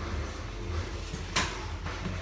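A single sharp click about one and a half seconds in, with a fainter one just after, over a steady low hum.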